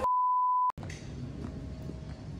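A single steady electronic beep tone laid over dead silence, lasting under a second and cutting off sharply with a click. After it comes faint outdoor background noise.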